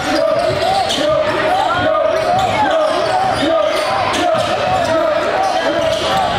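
Live high school basketball game in a gym: a ball being dribbled on the hardwood, sneakers squeaking, and voices from players and the crowd echoing in the hall.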